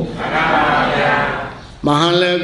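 A voice holding one long, drawn-out syllable in the chant-like delivery of a Buddhist sermon. The pitch wavers slightly, and the sound fades away near the end.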